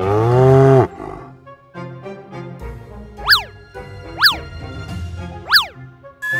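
A cartoon cow's moo, loud and brief, opens over light children's background music. Three quick rising-and-falling boing sound effects follow in the second half.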